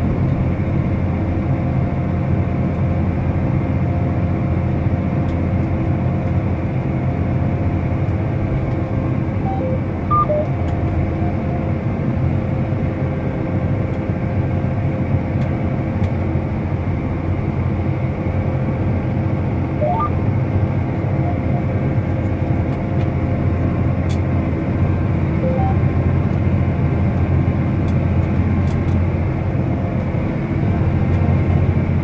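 Large John Deere tractor's diesel engine running steadily under way, heard as a constant drone inside the closed cab. A few faint short high tones come through about ten and twenty seconds in.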